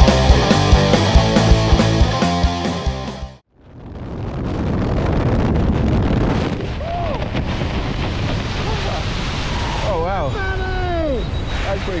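Rock music cuts off suddenly about three and a half seconds in. After that, wind rushes steadily over the microphone during a tandem skydive's descent under an open parachute. Near the end a voice calls out a few times, falling in pitch.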